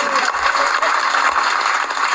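Audience applauding steadily, a dense clatter of many hands clapping.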